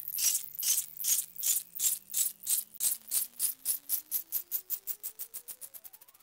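Sound effect of sharp ticks that speed up steadily and grow fainter, over a faint whine that rises in pitch, cutting out near the end.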